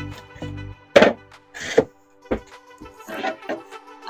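Several thunks and knocks as a trailer's dinette table and seat cushions are handled and set into place, the loudest about a second in, over steady background music.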